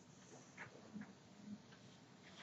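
Near silence: quiet room tone with a few faint, irregular ticks.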